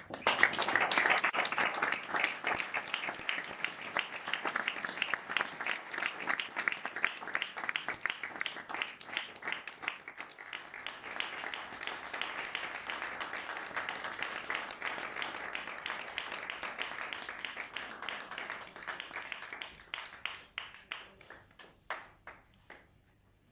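Audience applauding: a dense round of hand clapping that starts suddenly, is strongest in the first few seconds, then slowly thins and dies away near the end.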